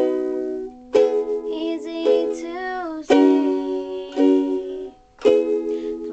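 Ukulele being strummed in a slow pattern, about one chord a second, each chord ringing on until the next, with a brief pause just before the strum about five seconds in.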